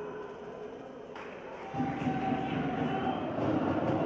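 On-pitch sound of a football match in a large indoor hall: a reverberant din of players' voices and calls, with a sharp knock about a second in. Just before halfway the din turns suddenly louder and denser, and it stays that way.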